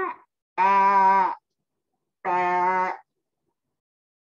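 A woman imitating a sheep's bleat: two long, drawn-out "baaa" calls on a steady pitch, about a second apart.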